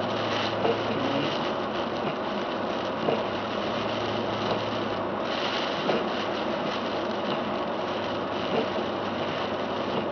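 Steady tyre and road noise of a car driving on a wet, slushy road, heard from inside the cabin, with a low engine hum beneath. A windshield wiper sweeps across the glass about five to six seconds in, and a few short clicks sound now and then.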